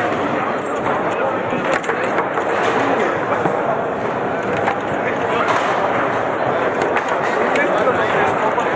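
Sharp clacks of a foosball ball being struck and played on a Lehmacher table-football table, over a steady murmur of background chatter in a hall.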